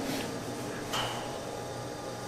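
Steady low background hum, with a single light click or knock about a second in.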